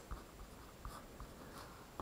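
Pen writing on paper: a few faint, short scratching strokes as a line of algebra is written.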